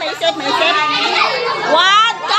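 A group of women's voices chattering and calling out over one another, high-pitched and excited, with one voice rising sharply near the end.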